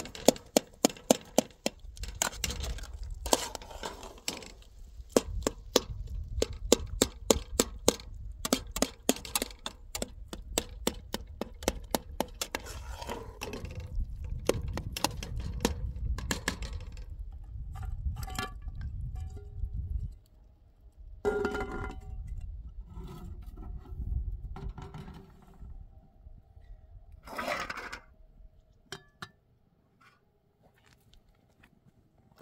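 A metal spoon clinking and scraping against an aluminium cooking pot as food is stirred, in quick regular strokes of about three a second. The strokes stop about two thirds of the way through, leaving a few separate clinks and knocks.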